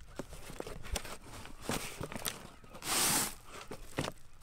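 Scattered rustling and light crunching of wood-chip mulch, soil and cardboard being handled, with a louder, longer rustle about three seconds in.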